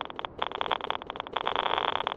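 Geiger counter (radiation scanner) clicking: irregular clicks that thicken into a rapid, almost continuous crackle about a second and a half in. The faster clicking signals stronger radiation.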